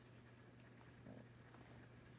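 Near silence: room tone with a faint steady low hum, and faint handling sounds about a second in as a stiff picture card is lifted.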